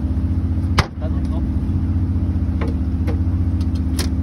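Steady low hum of a fishing boat's onboard machinery, with a sharp knock about a second in as the lid of the deck box for fishing rods is shut, and two lighter knocks later.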